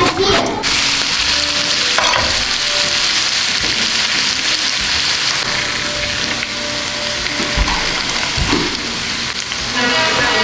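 Chicken pieces for shawarma sizzling steadily as they fry in a pan.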